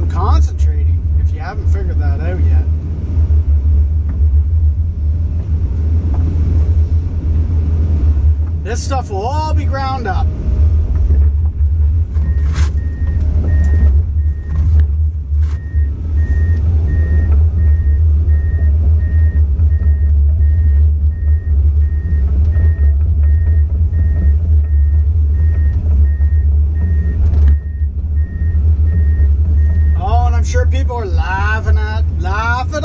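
Komatsu PC200 excavator's diesel engine running with a steady low drone, heard from inside the cab. From about twelve seconds in, a high-pitched warning beeper sounds in rapid, even pulses over it.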